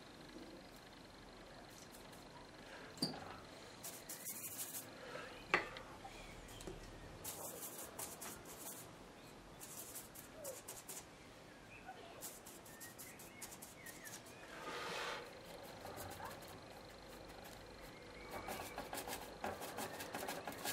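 Faint, scattered scuffs and dabs of a bristle brush working oil paint, with a couple of sharper clicks about three and five and a half seconds in.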